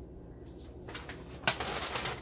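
Brown paper grocery bag rustling and crinkling as a hand reaches into it. It starts with a sharp crackle about a second and a half in, after a quiet stretch.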